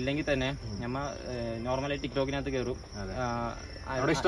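A man talking, with a steady high-pitched tone underneath.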